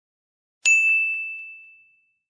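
A single bright ding, a bell-like notification sound effect, sounding about two-thirds of a second in and fading away over about a second, with a few faint ticks as it dies down.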